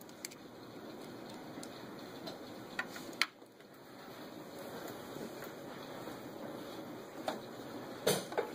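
Steady, faint background noise with a few small clicks from jumper-wire clips and meter leads being handled on a relay's terminals.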